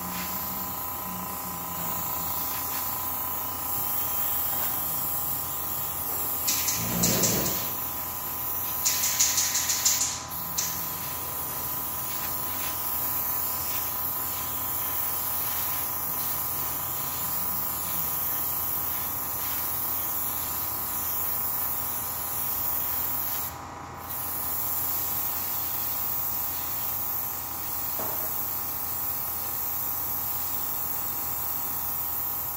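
Gravity-feed double-action airbrush spraying surfacer thinned with a little extra lacquer thinner: a steady hiss of air and paint. Two louder spurts come a few seconds apart in the first third, and there is a brief break a little past the middle.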